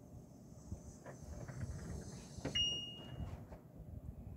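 Light handling clicks and taps with low rumble, then a sharper click about two and a half seconds in followed by a short high-pitched electronic beep lasting well under a second.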